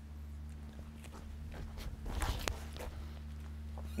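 A disc golf drive: footsteps of the run-up scuff across a gravel tee pad, most of them between about one and a half and two and a half seconds in, ending in a sharp snap at the throw. A steady low hum lies underneath.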